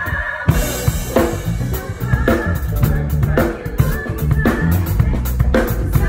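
A live drum kit plays with a band, with bass drum, snare and rim hits cutting through. It comes back in after a brief break at the very start.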